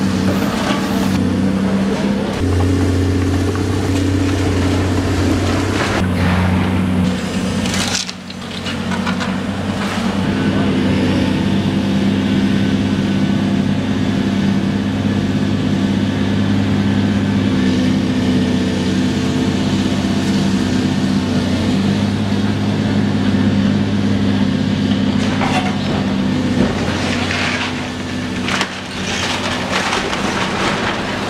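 Demolition excavator's diesel engine running under changing load while its hydraulic grab crushes and tears apart the brick and timber of an old house. Debris crashes down a few times, once about eight seconds in and again near the end.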